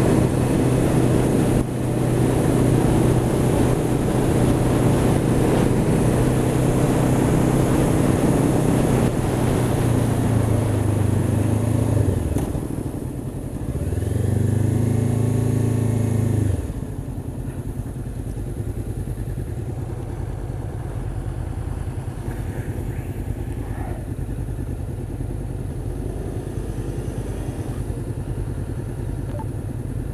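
Honda CB500X parallel-twin engine running under way, with wind rushing over the helmet microphone. About halfway through the engine note dips, rises and falls once, then the engine runs much quieter at low revs as the bike slows.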